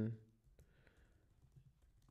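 A few faint keystrokes on a computer keyboard as text is typed.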